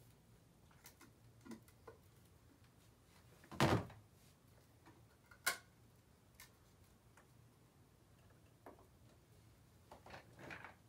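Scattered small clicks and knocks of objects being handled, the loudest a doubled knock about three and a half seconds in, followed by a sharp click about two seconds later.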